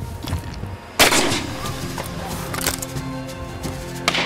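A single shotgun shot about a second in, over background music with held tones.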